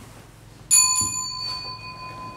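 A small altar bell struck once, about two-thirds of a second in, ringing with a clear high tone that slowly fades.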